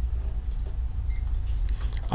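Background room tone with a steady low hum, and a brief faint high electronic beep just after a second in.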